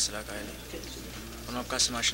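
A man's voice speaking in short phrases with a pause in the middle, the words not made out, over a steady low hum.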